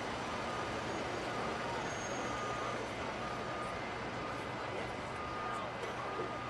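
Heavy fire trucks idling in steady street noise, with a short warning beep repeating about once a second.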